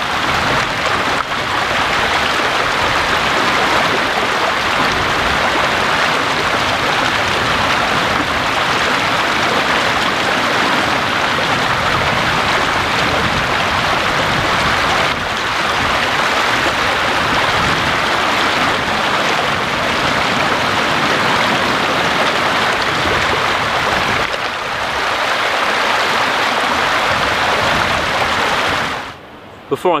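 Shallow, fast river running over stones, close up: a loud, steady rush of water, with hands being rinsed in the current.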